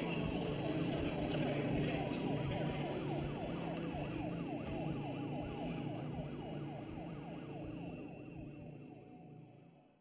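Ambulance siren in a fast, rapidly repeating yelp over the vehicle's low engine and road rumble, fading out over the last few seconds.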